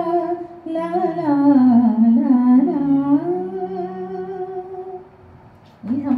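A woman singing solo, with no instrument, in long held notes that slide slowly up and down in pitch. The singing fades out about five seconds in.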